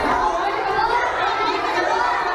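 Chatter of a crowd of children, many voices talking and calling out over one another.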